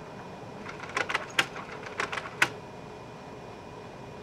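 Canon imagePROGRAF PRO-1000 photo printer's paper-feed mechanism clicking about eight times in a quick run, trying to pick up a sheet of card from the rear feed without catching it.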